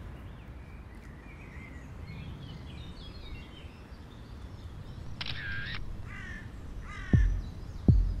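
Open-air background with birds chirping. A louder bird gives three harsh calls in the second half. Near the end, two deep thumps about three-quarters of a second apart begin a song's beat.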